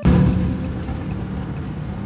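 Steady road and engine noise heard from inside a moving car's cabin, a low rumble with a faint hum through it.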